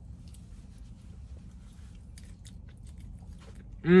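A person chewing a mouthful of chilaquiles with faint, scattered crunching clicks, ending in a loud, falling 'mmm' of approval.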